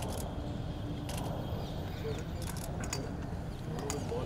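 Several sharp camera shutter clicks, spaced irregularly, as a posed group photo is taken, over a steady outdoor background hum.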